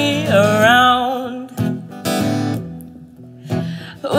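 A woman's singing voice holds the last note of a line with vibrato for about a second. Then an acoustic guitar strums a few chords alone, growing quieter toward the end.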